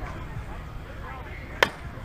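Softball bat hitting a pitched softball: one sharp crack about one and a half seconds in, with a short ring after it, over faint voices.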